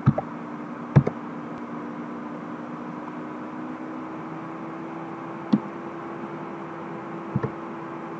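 Computer mouse and keyboard clicks over steady room hiss with a faint hum. There are a few short, sharp clicks, the loudest about a second in and a close pair near the end.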